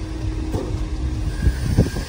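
Low, steady rumble of an idling truck engine, with two short knocks about a second and a half in.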